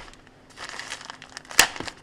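Frosted plastic packaging bag crinkling as it is handled, faint at first, with a sharp crackle about one and a half seconds in.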